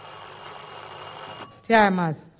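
Contestant's electric quiz bell ringing steadily to buzz in with an answer, cutting off suddenly about one and a half seconds in. A voice starts answering right after.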